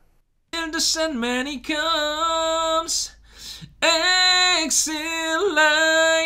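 A dry a cappella vocal recording from a Tula USB condenser microphone, played back: one voice singing slow, long held notes. It starts about half a second in and pauses briefly near the middle. The dry track keeps the natural reverb of the studio room, which this microphone picks up.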